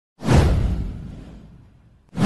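Intro sound effect: a single whoosh with a deep low rumble under it, starting suddenly a moment in and fading away over about a second and a half.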